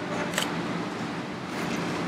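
Steady outdoor background noise, an even hiss with no clear source, with one brief soft click about half a second in.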